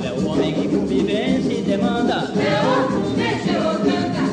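Sung music from a 1955 Brazilian record: voices, apparently a chorus, singing over instrumental accompaniment, with the narrow, dull treble of an old recording.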